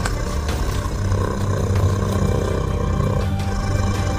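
A T-Rex roar sound effect, a long, rough roar through the middle, over dramatic film-score music.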